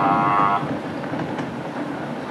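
A short, steady horn blast lasting about half a second at the start, followed by steady background noise.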